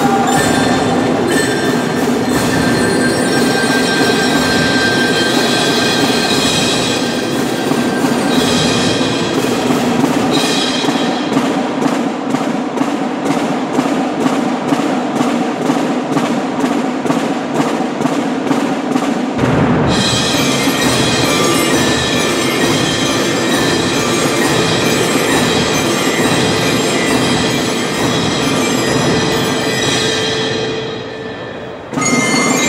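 Youth percussion ensemble playing a piece led by marimba and other mallet keyboards. About ten seconds in the low notes drop out, leaving rapid, even mallet strokes, and the full ensemble with its bass comes back in about nineteen seconds in.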